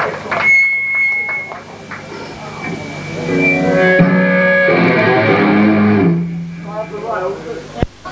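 Electric guitar through an amplifier, ringing out loose sustained notes and chords rather than a song, with a thin high steady tone about half a second in. Voices come in near the end.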